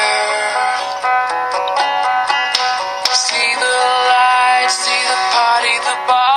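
Pop-country song: a singing voice over steady instrumental backing.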